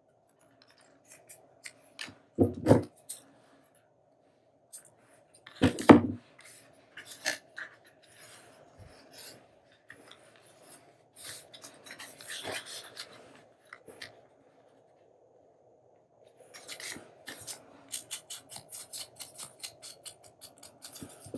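Hands handling paper, card and twine on a journal page: rustling and light taps, with two louder knocks about two and six seconds in. Near the end comes a quick run of scratchy rubbing strokes, as an ink blending tool is scrubbed over the edge of a paper tag.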